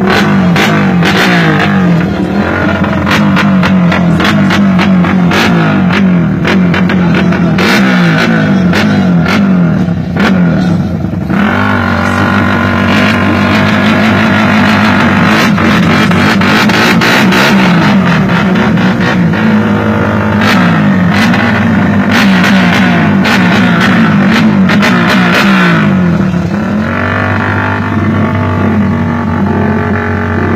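A drag-tuned motorcycle engine revved hard through an open aftermarket exhaust, its pitch rising and falling as the throttle is worked, with sharp cracks running through it. The revs settle into a steadier held note about halfway through, dip briefly near the end, then climb again.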